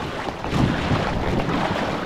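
Wind rushing over the microphone on open sea, with the splash and wash of a flat dragon boat paddle blade pulled hard through the water beside an outrigger canoe.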